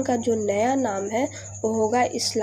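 A woman's voice speaking, with one long drawn-out syllable in the first half, over a steady high-pitched whine and a low hum.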